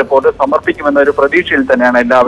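A news reporter speaking rapidly and continuously in Malayalam, a voice-over narration.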